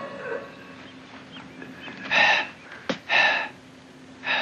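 A man breathing hard, winded after a fight: two loud, hoarse breaths about a second apart in the second half, with a short sharp click between them.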